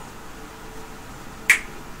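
Quiet room tone, broken by a single short, sharp click about one and a half seconds in.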